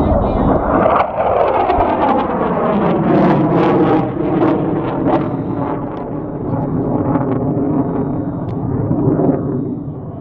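Military jet passing low overhead. A loud roar whose pitch falls as it goes by, then a steadier, lower rumble as it moves away.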